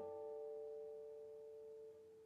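Classical guitar plucked once and left to ring, several notes sustaining together and slowly dying away.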